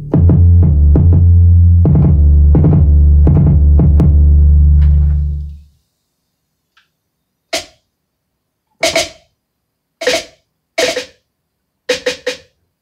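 A drum-machine beat played from an Alesis V49 MIDI keyboard: a loud, sustained deep bass under regular drum hits, cutting off sharply about halfway through. After a short silence, separate sharp drum hits sound at roughly one-second intervals, a little unevenly spaced.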